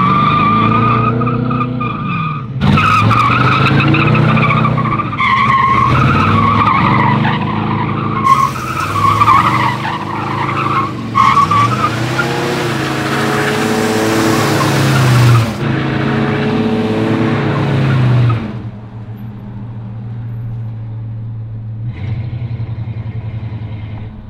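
Slammed 1967 Cadillac doing a burnout and slides: tyres squealing over an engine revved up and down again and again, with a loud hiss of spinning, sliding rubber in the middle stretch. About eighteen seconds in the squeal stops and the engine drops to a steady low run. It is a one-wheel burnout, the sign of the stock Cadillac rear end.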